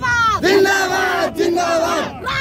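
Women shouting a rally slogan at full voice: one long held call, then two shorter calls near the end.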